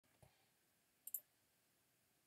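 Faint computer mouse clicks: a quick pair of sharp clicks about a second in, after a soft thump near the start, over near silence.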